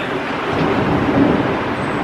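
Steady rushing outdoor background noise with no distinct event.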